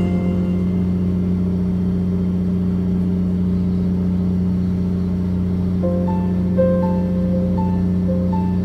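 A fishing boat's engine humming steadily and low under background music: plucked notes fade out at the start, and a simple melody comes in about six seconds in.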